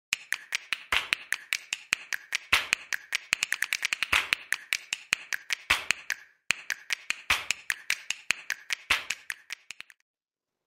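Percussive intro track of rapid snaps and clicks, several a second, with a louder accent about every second and a half. It breaks off briefly just past six seconds and fades out near the end.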